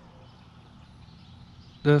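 Quiet early-morning outdoor background with faint birdsong. A man's voice starts near the end.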